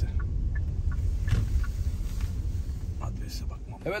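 Low rumble of a car driving slowly, heard from inside the cabin, with scattered faint clicks; the rumble fades near the end.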